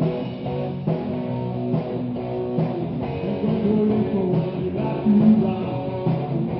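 Live rock band playing: electric guitars, electric bass and drums.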